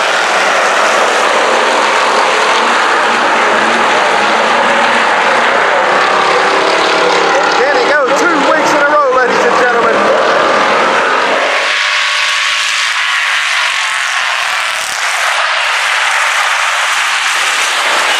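Pack of IMCA Hobby Stock race cars running flat out around a dirt oval, engine sound loud and continuous. Engine pitch rises and falls as cars sweep past about halfway through. Later the deeper part of the sound drops away and it turns thinner and higher.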